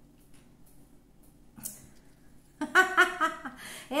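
A woman laughs, a short run of chuckles starting about two and a half seconds in, after a quiet stretch with a few faint ticks.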